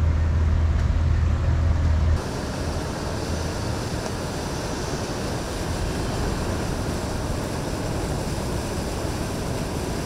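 A deep, steady drone of a large motor yacht's engines, which cuts off about two seconds in. It gives way to a quieter, even rushing of a motor cruiser running along the river with its wake.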